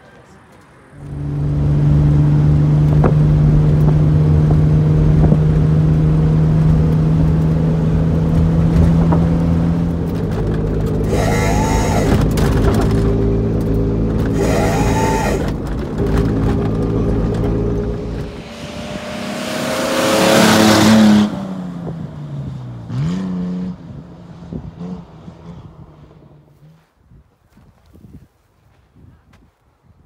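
1997 Nissan Pathfinder's engine and tyre noise heard from inside the cabin while driving on a dirt road: a steady engine note with two brief rises in pitch. About twenty seconds in, a loud rising rush peaks and the engine note falls away, then the sound fades out near the end.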